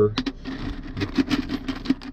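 Small rocks clicking and rattling against one another and the side of a metal bucket as a hand stirs and picks through them: a quick, irregular run of sharp clicks.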